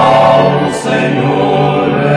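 Choir singing a gospel hymn, loud and sustained.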